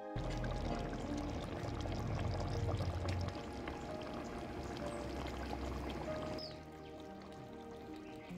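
Soft instrumental background music over a steady rushing noise with a low rumble; the rumble drops away about six seconds in.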